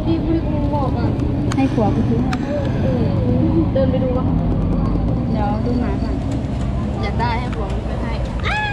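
People talking in Thai, over a steady low background rumble.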